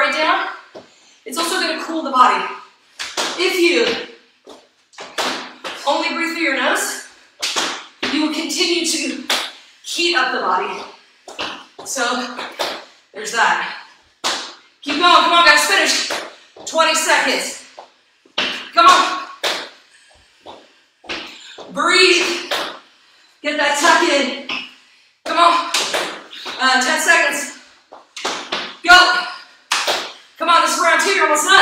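A woman talking in short phrases throughout, with brief pauses between them.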